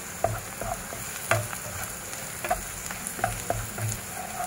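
Chopped onion, garlic and carrot sizzling in oil in a non-stick pan, stirred with a wooden spatula that scrapes and knocks against the pan about twice a second.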